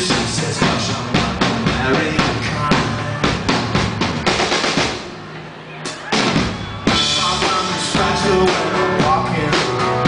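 Live rock band playing a song, drum kit prominent with steady beats under guitar. About halfway through the band drops back for under two seconds, then comes back in together on a sharp hit.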